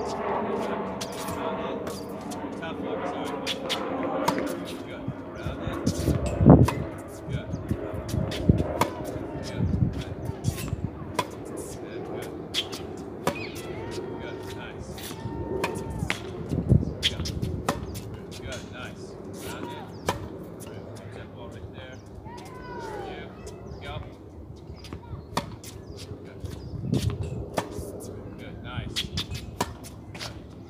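Tennis balls struck by rackets and bouncing on a hard court: an irregular series of sharp pops throughout, some much louder than others.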